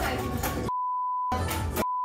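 A steady 1 kHz censor bleep masking swearing, sounding twice: for about half a second a little under a second in, and again near the end. Between the bleeps, voices over music.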